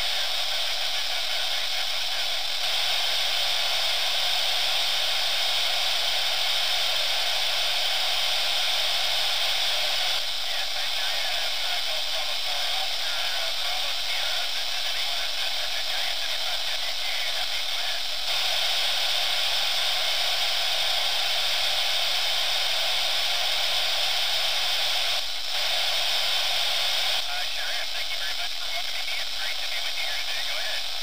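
Amateur radio receiver hissing on a weak ISS voice downlink, with faint, unintelligible voices barely showing through the static. The hiss shifts up and down in level every several seconds as the signal from the space station is still weak.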